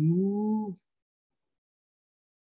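A low human voice holding a chanted meditation tone that slides upward in pitch and cuts off under a second in.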